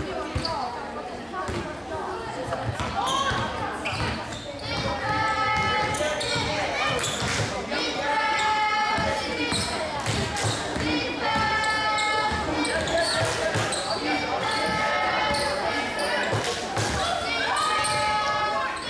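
A basketball bouncing on a sports-hall floor during play, with voices calling out and echoing in the large hall. Held, high-pitched calls of about a second each recur every few seconds over the bouncing.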